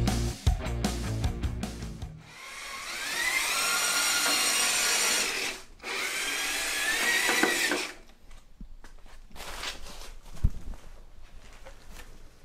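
Electric motor and gear drive of an Axial 1/10-scale RC crawler truck whining as it accelerates, in two runs that rise in pitch. Music plays briefly at the start, and near the end the whine gives way to quieter light knocks.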